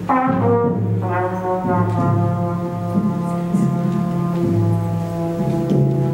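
Trumpet playing a slow melodic line of held notes, each lasting about half a second to a second, with light drum-kit accompaniment underneath.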